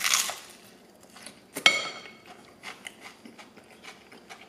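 A crunchy bite into a beer-battered, deep-fried fillet, followed by chewing with small crunches. About a second and a half in there is a single sharp clink with a brief ring.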